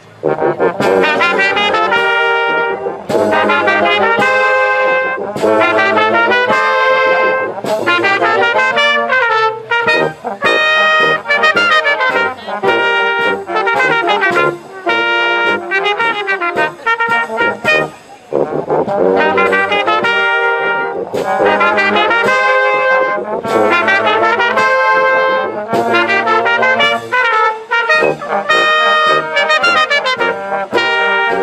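A small wind band of clarinets, saxophone, trumpets, trombones and sousaphone playing a tune together under a conductor, with short breaks between phrases at the very start and again just past halfway.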